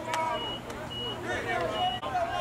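Indistinct voices of players and onlookers calling out between plays on a football field, with a short high electronic beep repeating about every half second to second.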